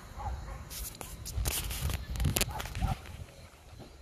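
Handling noise from a phone being moved: a series of knocks and rustles on the microphone, heaviest in the middle, over a low wind-like rumble, with a few faint short voice sounds.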